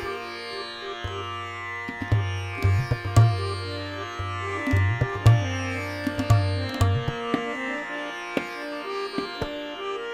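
Hindustani classical accompaniment in raag Bhoopali with no singing: a tanpura drone and sustained harmonium notes under a slow vilambit tabla theka. The tabla's sharp strokes fall throughout, and deep bass strokes ring out in two stretches, about a second in and again around the middle.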